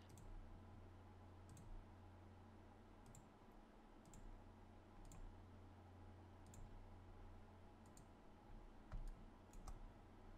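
Near silence with faint, scattered computer mouse clicks, about eight spread irregularly over the seconds, as points of a roto shape are placed, over a low steady hum.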